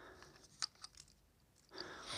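Faint handling noise of small metal torch parts and a screwdriver turned in the hands, with a few small clicks in the first second or so.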